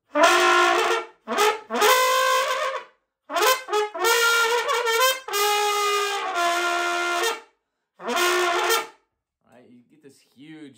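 Trumpet played with a throat growl: the player's uvula rattles while he blows, giving the notes a rough, buzzing edge. The notes come in several short phrases separated by brief pauses.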